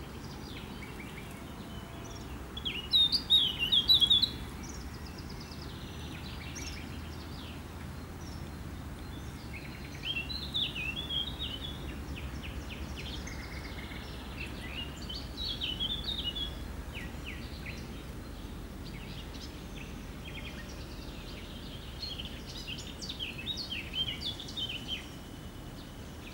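Songbirds singing in four spells of quick chirped and warbled phrases, the first and loudest a few seconds in, over a steady low background rush.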